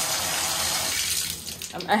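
Bathtub faucet running full into the tub, a steady rush of water that thins out about a second in.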